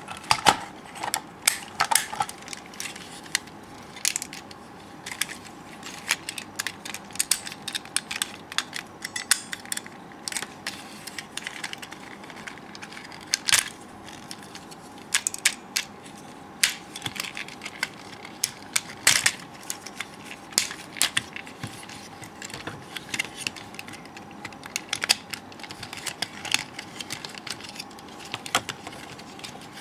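Plastic parts and joints of a VF-1A Valkyrie transformable toy figure clicking and clacking as they are handled and swung into place, with irregular small clicks and a few louder snaps.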